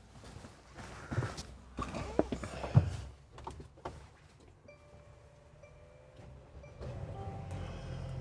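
Thumps and knocks of a person climbing into a van's driver's seat. About five seconds in, a steady electronic chime from the dashboard sounds for about two seconds with a brief break. It is followed near the end by a low hum as the ignition is switched on.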